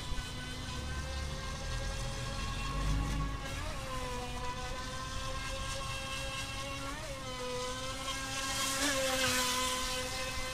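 A Feilun FT009 RC speedboat's brushless electric motor whines at a steady high pitch. The pitch dips briefly and recovers three times as the throttle eases and comes back on. A hissing rush rises near the end.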